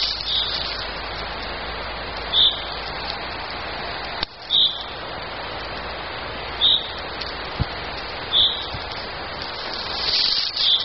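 A steady, even hiss, with a short high bird call repeated five times, about every two seconds.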